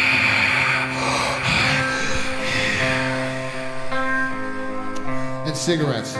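Live stoner-rock band playing a slow passage of long, droning electric guitar notes that change pitch a few times, over a steady noisy wash, with a sliding pitch near the end.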